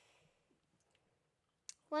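Near silence, then a single short mouth click just before a child's voice starts speaking at the very end.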